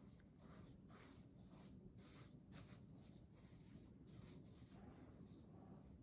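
Very faint stirring: a spoon working shredded coconut into cake batter in a round metal cake pan, soft strokes about two or three times a second.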